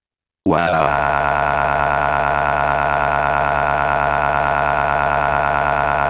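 A synthesized text-to-speech voice holding one long, steady vowel for about five and a half seconds, like a drawn-out shout of shock, after about half a second of silence.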